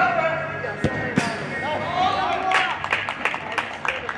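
Men's shouts on a five-a-side artificial turf pitch, with two sharp thuds of a football being struck about a second in. Near the end comes a run of sharp clicks and knocks under further shouting, as a goal goes in.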